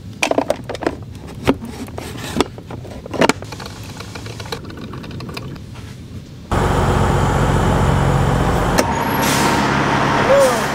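Clicks and clatter of plastic parts as a drip coffee maker's filter basket is handled and set in place. About two-thirds of the way in, a truck engine starts sounding loud and steady, heard at an open cab door, and continues to the end.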